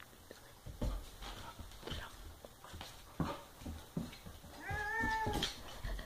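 Orange tabby cat, irritated by a playing puppy, gives one drawn-out angry meow about three-quarters of a second long near the end. It comes after several short, sharp scuffling noises as the two animals tussle on the tile floor.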